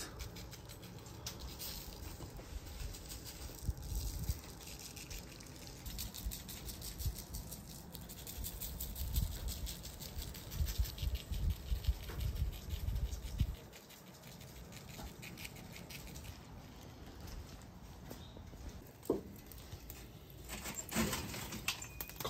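Dry rub seasoning shaken from a shaker and sprinkled by hand, the granules falling onto raw pork ribs and butcher paper, faint and irregular over a low rumble.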